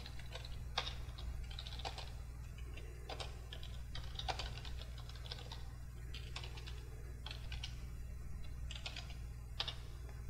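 Typing on a computer keyboard: irregular keystrokes in short runs, a few of them sharper, over a steady low hum.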